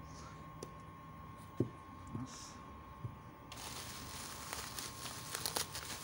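A few light clicks and knocks as small guitar parts, a humbucker pickup among them, are handled and set down on a table. Then, from a little past halfway, a steady crackly crinkling of plastic packaging.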